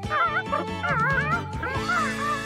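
Cartoon penguin character voices making a string of short, high, wavering calls over children's background music.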